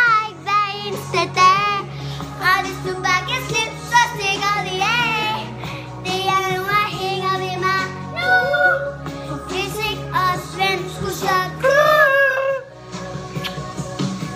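A young girl singing with energy over a backing of recorded music.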